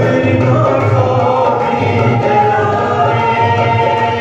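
A devotional worship song: a woman's voice leads the singing and other voices join in, over held harmonium chords and a steady hand-drum beat.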